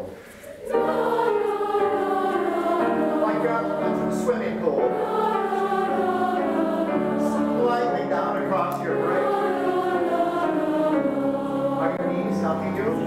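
Large children's choir singing together in long held notes, coming in about a second in after a brief pause.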